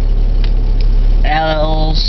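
A parked car's engine idling, heard from inside the cabin as a steady low rumble. A drawn-out spoken "uhh" comes in about a second and a half in.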